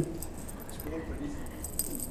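Quiet hall room tone with a faint voice in the background about a second in, and a few light clinks near the end.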